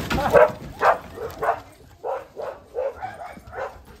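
A dog barking repeatedly, about three barks a second, growing fainter after the first second.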